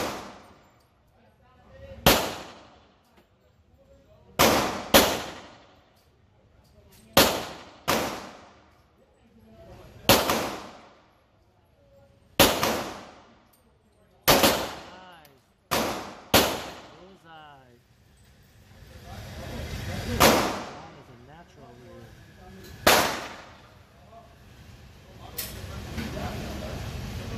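Handgun shots fired one at a time at a paper target, about a dozen in all. Most are two to three seconds apart, with a few quick pairs, and each shot is followed by a reverberating tail.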